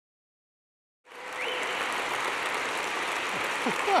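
An audience applauding, fading in about a second in after silence and holding steady.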